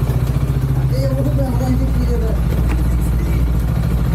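Motorcycle engine idling steadily at a standstill, with people talking faintly from about a second in.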